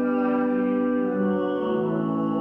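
Church organ playing sustained chords, moving to a new chord near the end.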